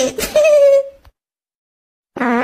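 A cartoon child's high, whiny giggle, a drawn-out "tsshehehe" that glides up and down and ends in a held note. It cuts off suddenly about a second in, and silence follows.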